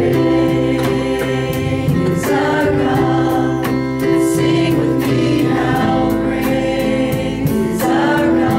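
A small worship vocal group singing together in harmony through microphones, holding long notes, over instrumental backing with a steady beat.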